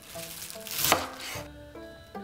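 A chef's knife slicing through crisp vegetables on a wooden cutting board: one long stroke that swells and ends in a sharp knock of the blade on the board just under a second in.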